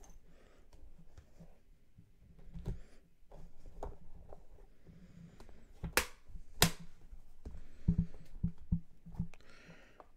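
Two sharp metal clicks about half a second apart, about six seconds in, from the chrome latches of an aluminium briefcase. Around them, quieter handling knocks and rustles of the case and card holders being moved on the table.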